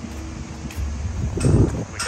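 Wind buffeting the microphone outdoors, a low rumble under a haze of street ambience, swelling louder about a second and a half in.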